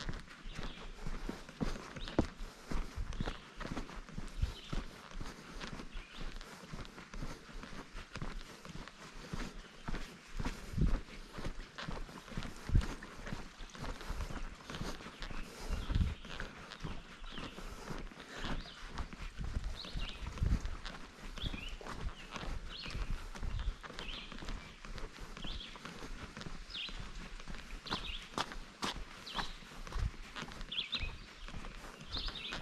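Footsteps of a hiker walking at a steady pace on a dirt forest trail: boots thudding and scuffing on the soil. In the second half there are short high chirps, about one a second.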